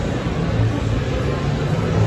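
Loud, steady din of a busy indoor food hall: a low hum under an even wash of noise, with no distinct voices or events standing out.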